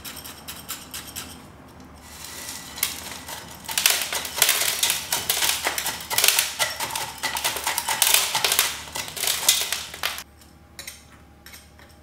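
Granular bonsai soil rattling as it pours from a metal soil scoop into a small pot and is worked in with a metal rod: a dense crackle of grit with many small clicks that builds about two seconds in and stops abruptly near ten seconds, with a few light clicks before and after.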